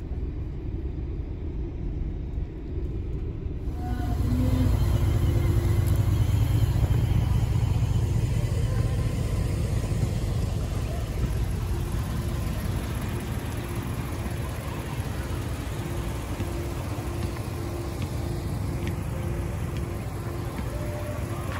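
Low, steady vehicle engine rumble at idle or low speed, stepping up louder about four seconds in as a Chevrolet Avalanche pickup on oversized rims rolls slowly close by.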